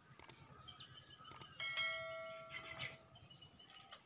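Subscribe-button animation sound effect: two short clicks, then a single bell chime about a second and a half in that rings and fades over a second or so.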